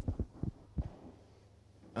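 A click and three or four low thumps in the first second: handling noise from a handheld microphone as it is passed over and gripped.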